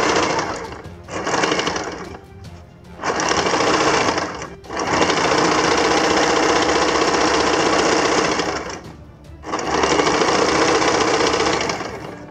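Electric domestic sewing machine stitching fabric, its needle running in a fast, rapid chatter. It sews in five runs with brief stops between them; the longest run, in the middle, lasts about four seconds.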